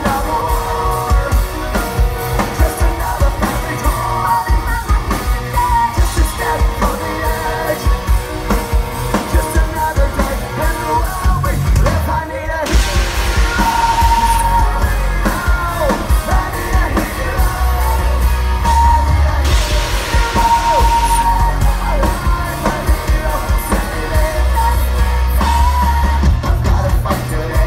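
Loud live hard rock: a band with distorted electric guitars, drums and a male lead vocal over a big outdoor PA, with crowd yells mixed in. About halfway through, and again a few seconds later, a loud hiss of stage CO2 cryo jets blasting cuts through the music.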